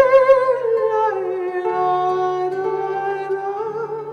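A woman singing long held notes with vibrato while accompanying herself on a nylon-string classical guitar; the vocal line steps down about a second in.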